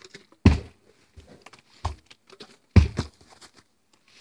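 A plastic water bottle thudding down onto carpet as it is flipped: two heavy dull thuds and a lighter one in between, with small knocks.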